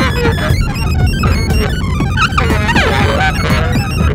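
Live improvised electronic music: live-coded laptop electronics with electric guitar, a dense mix of many short gliding and jumping pitched tones over a steady heavy low end.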